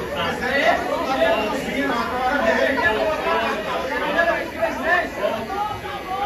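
Many voices talking over one another at once, a crowd of people arguing in a large committee room.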